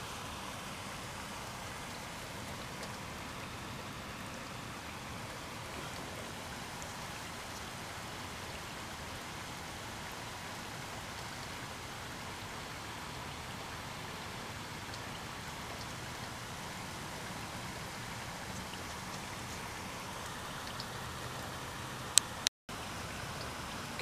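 Steady rain falling, an even patter outside the window. A sharp click sounds near the end, followed by a moment's dropout.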